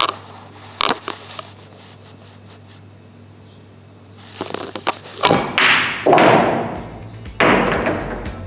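Pool follow shot: the cue tip strikes the cue ball, the ball-on-ball click follows, then both balls drop into the corner pocket with thuds and a rattle, a run of sharp knocks in the second half. A few lighter clicks come in the first second or so.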